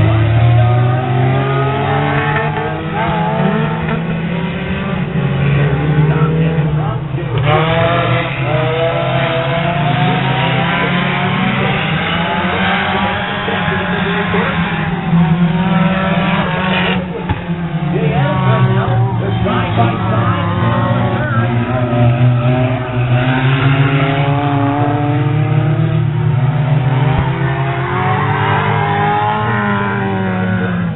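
Engines of several figure-8 race cars at once, revving up and falling off in overlapping rising and falling tones over a steady low drone.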